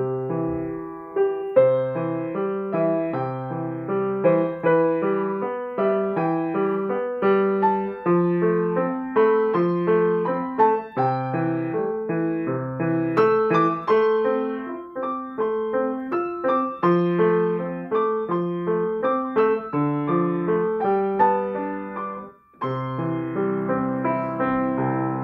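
Steinway & Sons baby grand piano being played: a melody over held bass chords, with a short break about a second and a half before the end before the playing picks up again.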